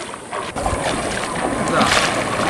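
Feet wading through shallow sea water, splashing with each step, with wind buffeting the microphone from about half a second in.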